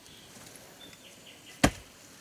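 A rough flat stone set down onto another stone, giving a single sharp knock about one and a half seconds in.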